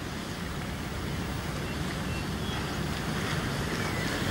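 A steady background ambience: an even, noise-like hush with no distinct events, rising very slightly in level.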